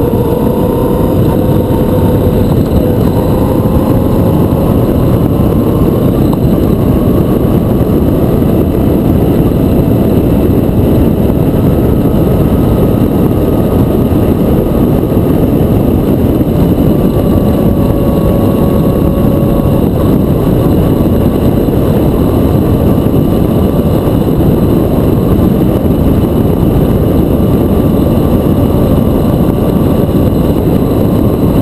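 Motorcycle engine running at road speed, its pitch drifting slowly up and down, under loud steady wind rush on the microphone.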